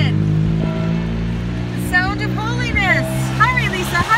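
Church bells ringing a tune, several long tones overlapping and sounding on. Wavering, voice-like sounds come over them in the middle.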